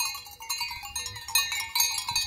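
Small bells on a grazing flock of sheep, clinking and ringing irregularly.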